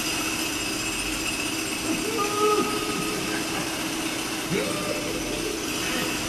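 Steady machine-like hum, a sound effect mixed in for the crab working unseen inside its burrow. Two short muffled voice-like sounds come in, about two seconds in and again about four and a half seconds in.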